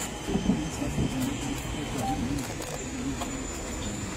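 Low, indistinct talk from a small group of people standing together, over a steady background rumble.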